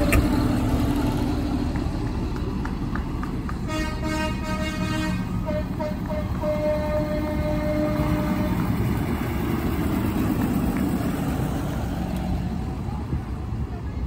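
Tractor engines running as tractors drive past, with a horn sounding a few short toots and then one longer blast between about four and eight and a half seconds in.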